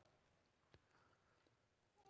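Near silence: room tone, with one faint click.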